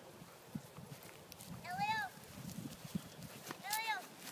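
Doberman Pinschers at play with a ball on dry grass: soft scattered thuds and scuffles, with two short high-pitched calls about two seconds apart, each rising and then falling.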